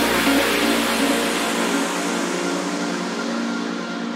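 Electronic dance track going into a breakdown: a hissing noise sweep fades away and the deep bass cuts off about two seconds in, leaving sustained synth chords.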